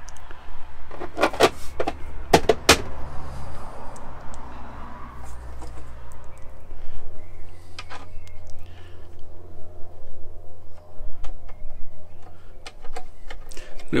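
Grey plastic junction-box lid being fitted by hand, with a cluster of sharp plastic clicks about one to three seconds in. After that come light scrapes and clicks as its knob screws are turned, over a low steady rumble.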